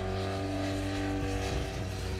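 Honda RVF750 endurance racer's V4 engine running as the bike rides across the course, a steady engine note that sinks slightly in pitch.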